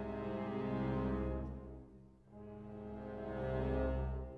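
Film score music: long held low chords that swell, fade almost away about two seconds in, and swell again.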